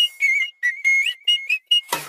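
A whistled melody in a dance track, sliding back and forth between two high notes, with sharp percussion clicks and no bass underneath.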